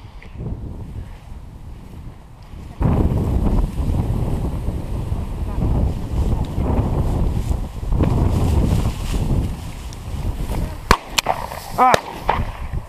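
Strong wind buffeting the action camera's microphone, a loud low rumble that rises suddenly about three seconds in and gusts on. Near the end, two sharp cracks about a second apart stand out above the wind.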